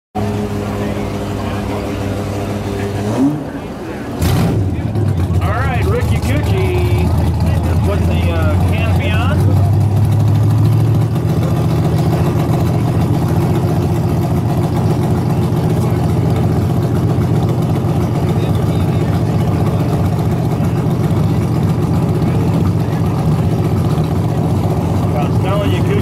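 Harley-Davidson KR flathead V-twin race engine running steadily at idle. There is a short break with a sharp click about four seconds in, and the engine is a little louder for the next several seconds before settling.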